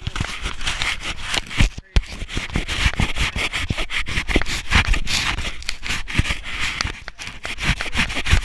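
Camera handling noise: rubbing and scraping over the microphone with many small knocks, as the camera is covered and moved about.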